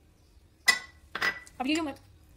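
A metal spoon clinking twice against a white ceramic bowl of salsa, about half a second apart; the first clink is sharp and rings briefly.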